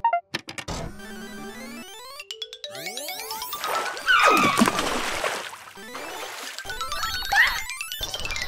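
Cartoon sound effects over background music: a series of rising, stretching glides, then a sudden water splash about four seconds in.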